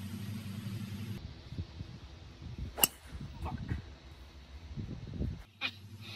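A single sharp hit of a golf club striking a ball, about three seconds in, over quiet outdoor background. A low steady hum in the first second stops abruptly before it.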